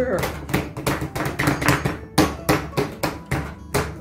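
Hands kneading and pressing homemade flour play dough on a wooden board, making a run of irregular knocks and thuds, about four a second.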